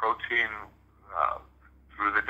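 Only speech: a person talking in two short phrases, with a short pause between them.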